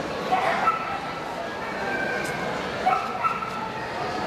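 A dog barking and yelping in two short bouts, about half a second in and again near three seconds, over the steady chatter of a crowd in a large hall.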